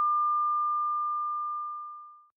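A single steady electronic tone, one pure unwavering pitch held throughout and slowly fading away toward the end.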